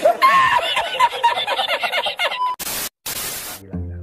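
A man laughing hard in repeated high-pitched, breathless cackles for about two and a half seconds, from the laughing-man meme clip. Then two short bursts of hiss.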